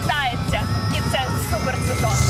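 Helicopter cabin noise: a steady engine-and-rotor drone with a thin whine above it, heard under a woman's voice.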